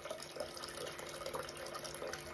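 Water being poured from a glass carafe into a stainless steel saucepan, a faint steady pour.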